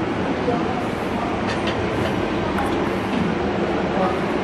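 Steady background of indistinct voices from several people over a low, even rumble, with no one speaking close by.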